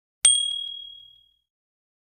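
Notification-bell sound effect: a click and then a single high 'ding' about a quarter second in, ringing out and fading over about a second.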